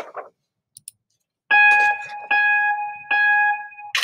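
Mac Photo Booth's photo countdown: three electronic beeps about 0.8 s apart, each held until the next, then the camera-shutter sound right at the end.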